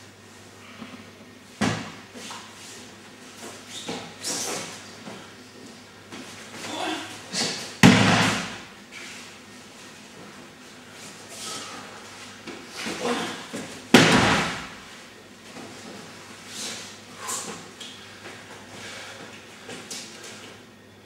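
A person thrown onto a tatami mat in aikido practice: three sharp thuds of a body landing, about two seconds in, about eight seconds in and at fourteen seconds, the last two loudest, with softer scuffs between.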